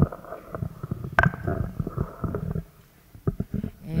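Handling noise from a table microphone being lifted and passed along: a run of low bumps and rubbing with one sharper click about a second in. It settles briefly near the three-second mark, then a few light knocks follow.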